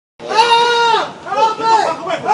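A man screaming for help in a high, strained voice: one long held cry, then two shorter ones.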